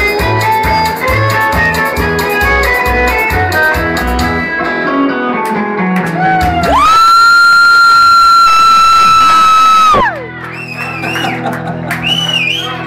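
Band playing a fast polka on electric guitar, a Gibson Les Paul Standard, with drums keeping an even beat. The tune runs down into one long held high note, the loudest part, which cuts off suddenly about ten seconds in. It is followed by quieter whoops and whistles over a steady low hum.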